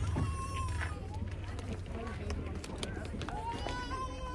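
Faint voices with two drawn-out, wavering calls, one just after the start and one near the end, over a steady low rumble.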